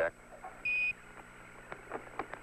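One short, steady Quindar tone beep on the Apollo air-to-ground radio loop, a little past half a second in: Mission Control's keying signal marking a Capcom transmission. Faint radio clicks and a steady low hum sit under it.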